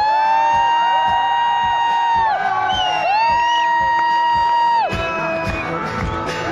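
Live pop music: a singer holds two long sung notes, each about two seconds and sliding up into the pitch, over acoustic guitar and a steady beat.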